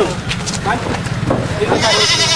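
Goats bleating, with a long wavering bleat near the end, amid people's voices.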